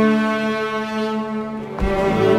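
A children's cello ensemble holds one long sustained note together, then about two seconds in starts a new, busier passage with a sharp attack.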